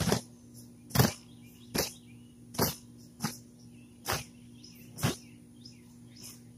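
Hammer strikes: a series of sharp knocks, about seven in six seconds at an uneven pace.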